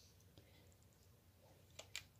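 Near silence: room tone, with two faint clicks near the end from the drone's retail box being handled.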